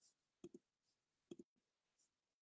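Near silence with faint clicks: a quick double click about half a second in and another about a second later.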